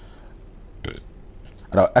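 A man's speaking voice pauses, leaving a faint low hum. A brief single vocal sound comes a little under a second in, and he starts speaking again near the end.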